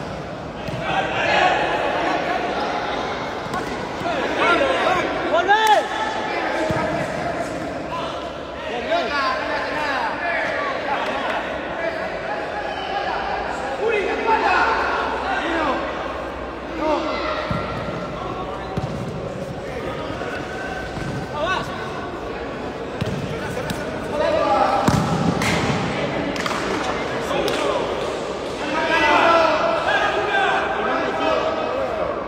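Players and spectators shouting across a large, echoing sports hall, with the occasional thud of a futsal ball being kicked and bouncing on the concrete court.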